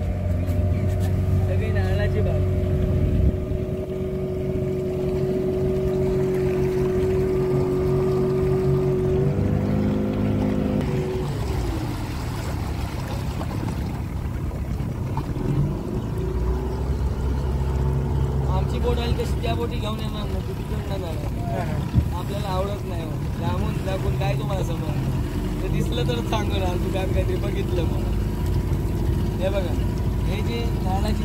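A boat's motor running steadily, its note shifting about nine seconds in and falling away around twelve seconds, then rising again a few seconds later as the boat changes speed.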